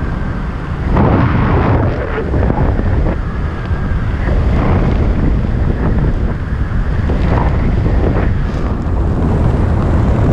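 Airflow buffeting a helmet camera's microphone during parachute canopy flight: a loud, gusty wind rush that swells and eases about once a second.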